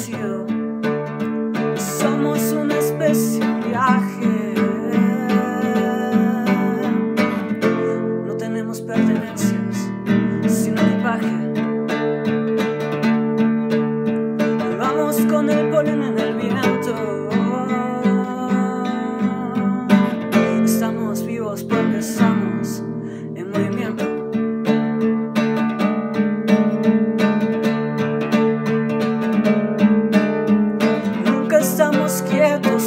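Acoustic guitar strumming chords in an instrumental passage of a song, with sharp percussive strokes from the strumming hand.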